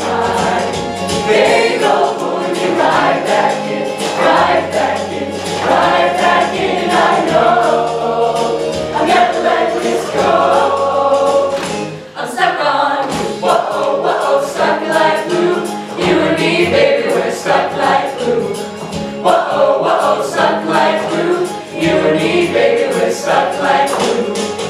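A mixed-voice high school show choir singing an upbeat song, with a brief break about halfway through.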